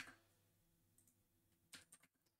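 Near silence: room tone, with a very faint click about a second in and two short faint clicks near the end, from working the computer's controls.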